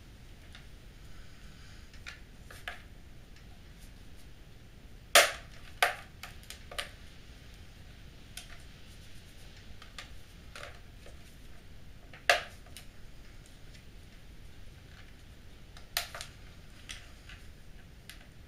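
Plastic snap-fit catches of an Acer Revo RL80 mini PC's top case clicking free as a plastic guitar plectrum pries along the edge. A handful of sharp, separate plastic clicks, the loudest about five seconds in, with faint handling ticks between.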